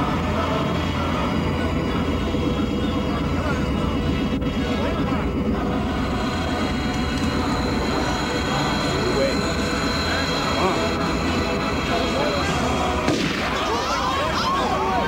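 A steady low rumble runs throughout, with the indistinct murmur of a crowd under it and a few voices rising near the end.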